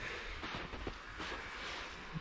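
Quiet outdoor background: a faint, even hiss with no distinct sound event.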